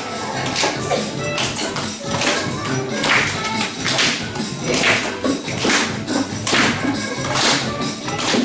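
A class of young children clapping in unison to the pulse of a recorded song, a little under one clap per second, with the music playing throughout.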